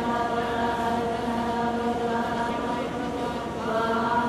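Women's voices chanting Sanskrit Vedic mantras in unison, drawn out on long, steady held notes, with a brief pause near the end.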